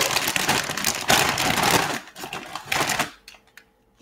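A plastic tortilla-chip bag crinkling and rustling as a hand rummages inside it for a chip. The crinkling is dense for about three seconds, then stops, leaving a few light ticks.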